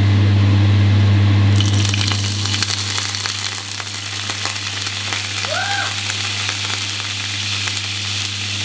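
Hot frying pan sizzling and crackling as something is put into it, starting about a second and a half in and carrying on, with a steady low hum underneath that is loudest at the start.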